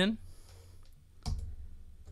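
A single sharp click from the computer's controls, a little over a second in, over a low room hum.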